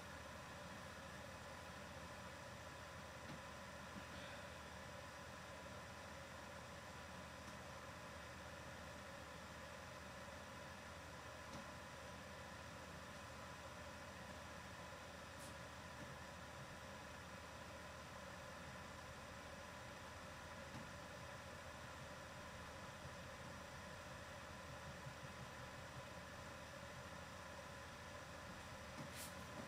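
Near silence: steady low hiss of an open microphone and room tone, with faint steady hum tones.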